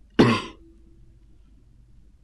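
A single short, sharp cough about a fifth of a second in.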